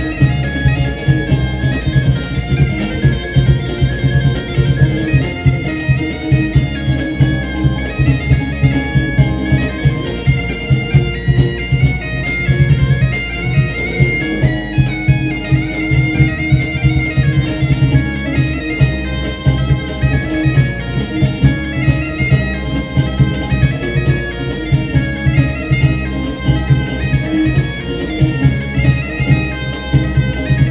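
Live folk band music led by a gaita-de-foles (Portuguese bagpipe), its melody over a steady drone, with a regular beat running underneath.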